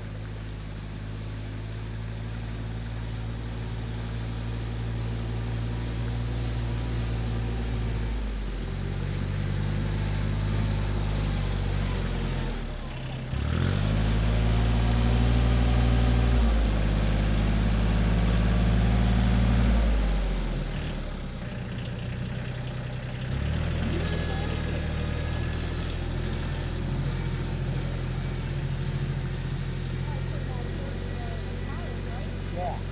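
Compact tractor with a front loader, its engine running steadily as it works through a flooded trail. The engine note drops and picks up again several times, and it is loudest in the middle, when the tractor is closest.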